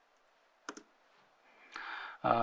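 A single short click about two-thirds of a second in, as the presentation slide is advanced, then a soft intake of breath near the end.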